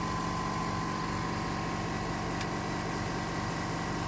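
Air compressor running with a steady hum and a thin high whine over it, supplying air as the autoclave bubble remover pressurises toward about 4 to 5 kg.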